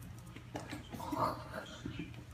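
A cat and a puppy scuffling on a tile floor: scattered paw and claw clicks, with a short vocal sound about a second in, over a low steady hum.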